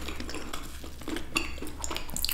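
A few light clicks and taps as macarons are picked up off a dessert tray and handled.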